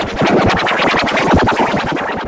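Electronically processed music effect: a rapid stuttering, scratch-like run of quick clicks and chopped sound, loud and dense throughout, starting abruptly.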